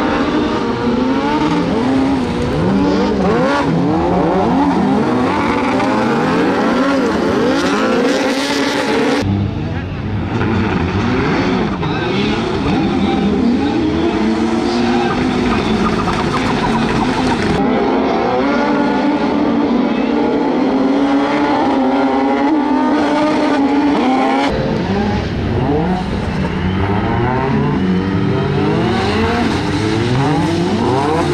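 Several autocross race cars' engines revving up and down together on a dirt track, their pitches rising and falling as they change gear and overlapping. The sound changes abruptly three times.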